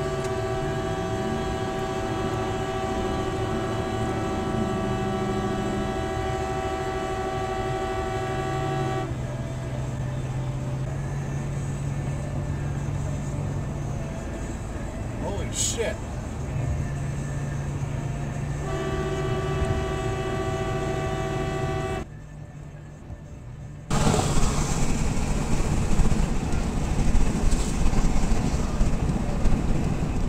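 A car horn held down in a long steady blast of about nine seconds, then sounded again for about three seconds after a pause, over road noise. Near the end, after a brief drop, louder road and wind rumble.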